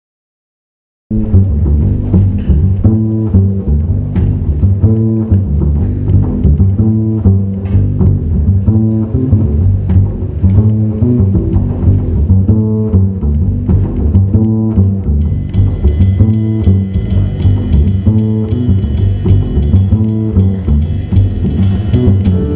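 Opening of a jazz band tune: a plucked upright bass plays a repeating groove line, starting about a second in, with percussion under it. About two-thirds of the way through, cymbals join with a bright ringing wash over the groove.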